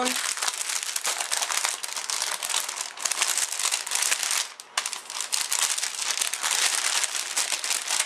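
Clear cellophane packaging crinkling continuously as embellishment packs are pulled out of a cellophane bag, with a brief pause about two-thirds of the way through.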